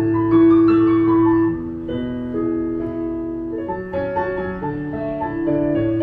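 Roland digital piano played in a slow, legato passage: sustained chords over held bass notes, changing about once a second, a little louder in the opening phrase.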